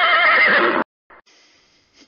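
A horse whinny, one loud wavering call of about a second that stops abruptly, followed by a short click and a faint steady hiss of a phone line.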